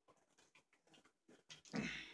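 A man drinking from a plastic water bottle, with small gulping and swallowing clicks. Near the end comes a louder, rough breath out as he finishes drinking.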